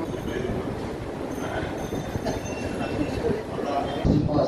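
A man's voice, speaking into a handheld microphone and played through a PA, sounds muffled over a steady low rumble.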